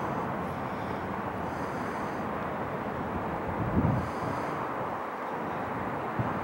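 Steady low outdoor rumble of distant traffic, with breeze on the microphone and one brief louder low buffet a little before four seconds in.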